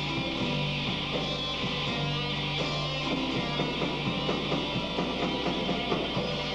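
Live rock band playing an instrumental stretch with no vocals: electric guitar, electric bass, drum kit and keyboard, with a steady beat of drum hits under a held low bass note.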